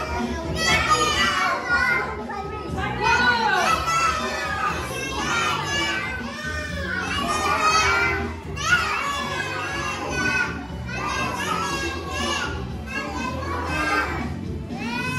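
A group of young children singing a song together over recorded backing music, their voices overlapping.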